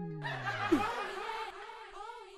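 Sitcom laugh track: canned audience laughter that fades in the second half. It opens with a falling comedic sound-effect tone that slides down during the first second.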